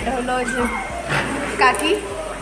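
People's voices talking, with a short, loud, high-pitched sound about one and a half seconds in.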